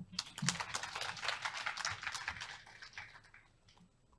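Audience applause, a dense patter of hand claps that thins out and dies away about three and a half seconds in.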